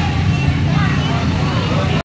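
Crowd chatter in the street over a loud, steady low rumble.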